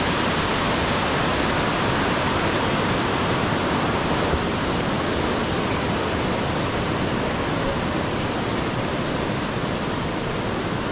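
Rushing water of a cascading mountain stream tumbling over rocks, a steady, unbroken rush.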